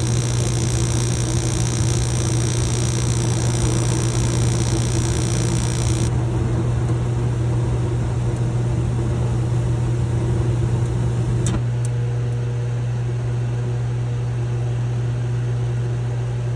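Mr. Heater Big Maxx MHU50 gas unit heater running, with a steady low hum from its combustion blower while the burners are lit. About eleven and a half seconds in there is a click and the sound changes as the burner flames shut off while the blower keeps running. This is the short flame cycle that the owner questions as abnormal.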